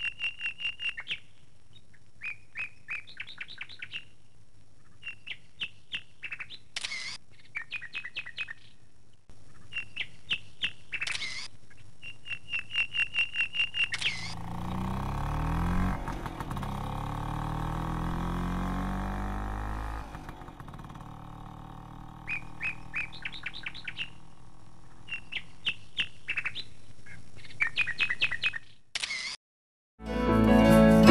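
A small bird calling over and over in quick runs of high chirps. About halfway through, a vehicle passes, its sound swelling and then falling in pitch as it goes by, before the chirping resumes.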